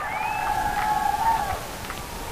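A single high-pitched, drawn-out shout from someone at a softball game, held for about a second and a half, over a faint crowd murmur.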